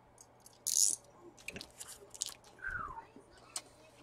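Mouth noises of someone eating or drinking: a short crunchy burst about two-thirds of a second in, then small clicks and smacks, and a brief falling vocal sound near three seconds.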